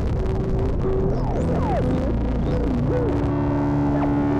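Improvised ambient drone on a Eurorack modular synthesizer: a steady low drone under held tones, while a higher tone slides and wavers up and down through the middle, dipping low and then settling back into a held note near the end.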